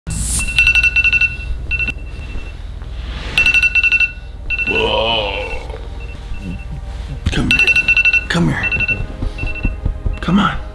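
A wake-up alarm ringtone ringing in repeated pulsed bursts about every three to four seconds. Between the bursts come short non-word vocal sounds, a drawn-out one about five seconds in.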